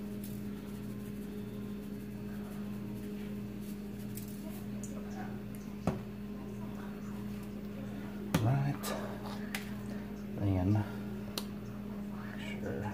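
A steady electrical hum with a pulsing low undertone throughout, broken by a few light clicks and knocks as seasoning shakers are handled and set down on a granite countertop. Two brief murmurs of voice come in a little after the middle and again near the end.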